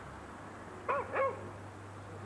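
A dog barking twice in quick succession, two short woofs about a second in.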